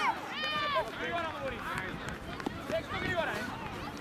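Children's high-pitched shouts and calls overlapping across the pitch, the clearest one about half a second in, with more voices calling throughout.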